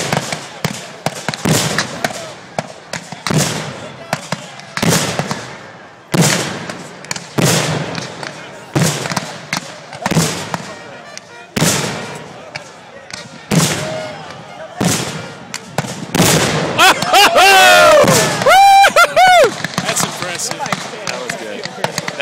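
Black-powder musket fire from a line of Civil War reenactors: sharp reports at irregular intervals, about one every second or so, each with a short echo. About three-quarters through, loud shouting voices drown out the gunfire for a few seconds.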